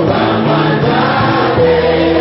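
Church choir singing gospel music, holding long sustained notes.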